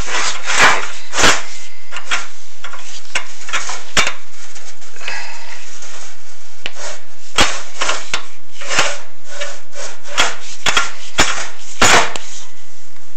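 Irregular scraping and knocking of a chimney inspection camera and its push cable rubbing against the walls of a sooted metal stove flue as it is fed down. The loudest knocks come about half a second and a second in, with a cluster near the end.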